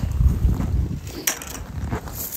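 Low rumbling handling and wind noise on the microphone as the camera is carried about, strongest in the first second, with one sharp click a little over a second in.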